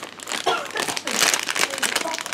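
A plastic Haribo sweet bag crinkling and rustling as it is handled and reached into, with the crinkling loudest in the second half.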